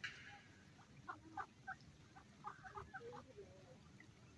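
Mallard ducks giving a run of faint, short quacks and chattering calls, after a brief rustle at the very start.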